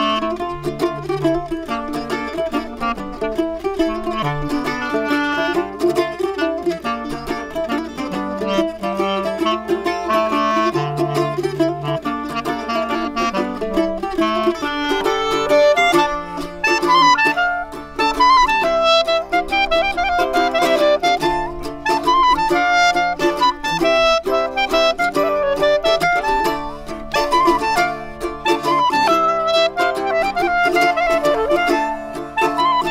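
Clarinet and mandola playing a minor-key mazurka as a duo, the mandola plucked under the clarinet's melody.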